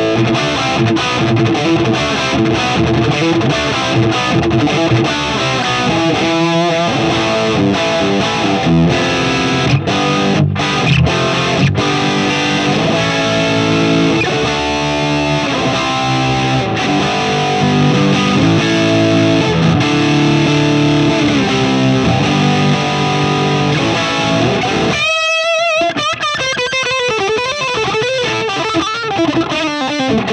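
Gibson Les Paul Standard electric guitar played through a Marshall JCM800 2203 amplifier with a distorted tone, running through chords and riffs. Near the end it moves to a single high note held with wide vibrato and bends.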